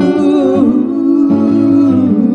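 A woman singing long, held wordless notes with a slight waver into a handheld microphone, over acoustic guitar accompaniment.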